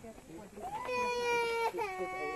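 A young child crying: one long cry held on a steady pitch starting about a second in, cut off briefly, then a second cry beginning near the end.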